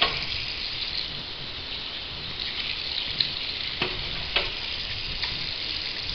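Tap water running steadily from a faucet into a small sink, with two short clicks a little under four and about four and a half seconds in.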